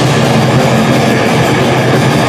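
Live crossover thrash metal band playing loud, with distorted electric guitars and drums in a dense, unbroken wall of sound.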